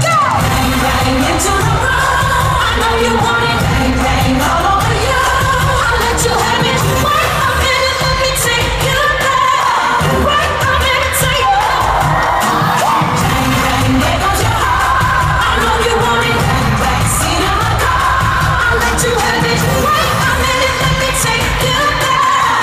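Live pop song in an arena: a female singer over a loud, bass-heavy backing track, heard from within the crowd.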